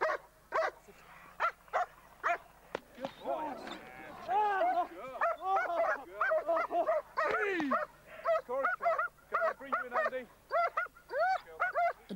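German Shepherd guard dogs barking and snarling aggressively in quick, repeated bursts during bite training, several barks a second at times.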